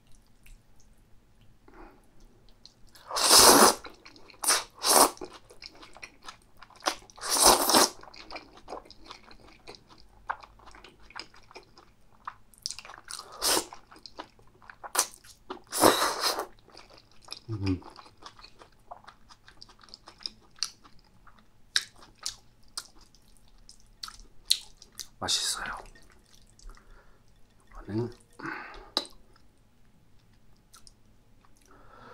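Close-up eating sounds of spicy stir-fried gopchang with glass noodles: several loud slurps of the noodles, with wet chewing and small mouth smacks and clicks between them. Two brief low hums from the eater, near the middle and near the end.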